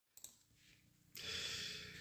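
Near silence with a faint click, then from about a second in a soft, steady hiss of room noise as the recording opens.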